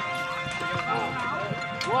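Ox-drawn bullock cart moving along a dirt track, the oxen's hooves clopping, with faint voices and steady background music.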